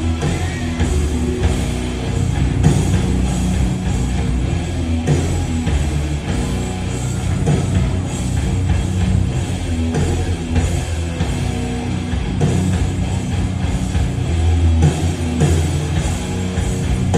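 Live rock band playing an instrumental passage with electric guitars, bass guitar and drum kit, loud and steady throughout.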